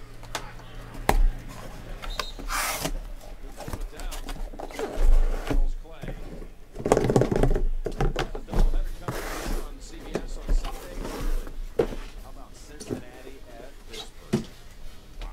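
Cardboard shipping case being opened by hand and its sealed boxes pulled out and stacked: scattered knocks and a ripping rustle, then a longer sliding, scraping noise about seven seconds in.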